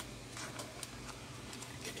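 Light, scattered clicks and small knocks from hands handling a speaker's amplifier board and its back panel, over a low steady hum.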